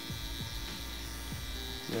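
Two battery-powered FK Irons Exo rotary tattoo machines buzzing steadily as they needle skin, over background music.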